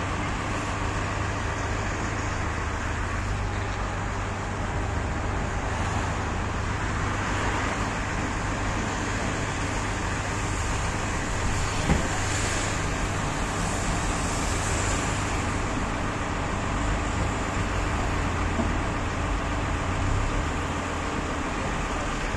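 Steady city street traffic noise with the low rumble of idling car engines, and a single knock about twelve seconds in.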